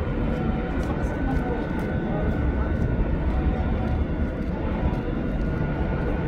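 Steady low rumble of outdoor urban and construction-site background noise, with faint ticks over it.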